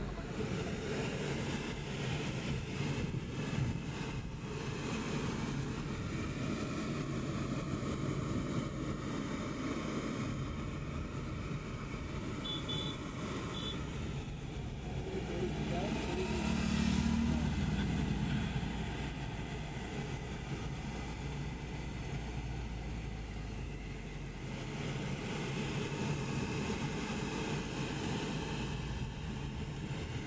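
Steady engine and tyre rumble heard from inside a car's cabin while driving on a rain-wet road, with a louder swell a little past halfway.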